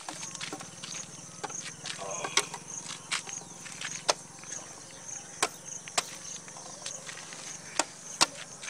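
Sharp clicks and knocks as the battery side cover of a Royal Enfield Classic 350 is pushed and snapped back into place, about eight of them spread unevenly. A high-pitched insect chirps steadily underneath, pulsing about twice a second.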